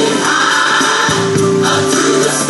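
Gospel music with a choir singing, the voices holding a long note in the second half.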